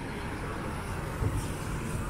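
Road traffic noise from cars on the street: a steady rumble that swells slightly about a second in.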